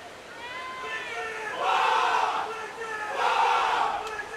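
People shouting: one drawn-out call that bends in pitch, then two loud shouts about a second and a half apart.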